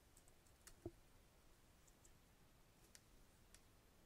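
Near silence with a few faint, scattered clicks of a computer keyboard as a line of code is edited, and one soft low thump a little under a second in.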